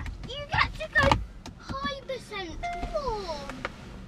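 Indistinct children's voices, short exclamations and chatter, in a car cabin, with a couple of low knocks near the start and about a second in.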